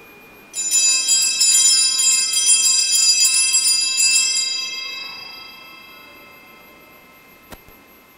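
Altar bells shaken for about four seconds and then left to ring out, marking the elevation of the consecrated host. A short faint click near the end.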